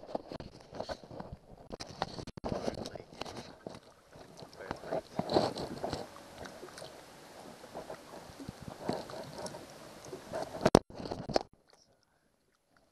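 Shallow lake water splashing and sloshing around a musky held at the surface for release, mixed with crackling rubbing and knocks on the camera. The busiest splashing comes about halfway through, and a burst of sharp knocks comes near the end.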